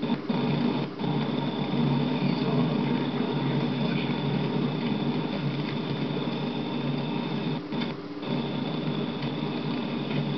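Steady drone of a moving car heard from inside the cabin, engine and road noise together, with a thin high whine running through it. It dips briefly about a second in and again near the end.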